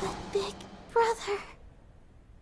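A young woman's voice making three short moans, the middle one loudest, in the first second and a half.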